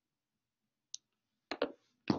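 A few short clicks: one faint click just under a second in, then a louder pair of knocks about a second and a half in.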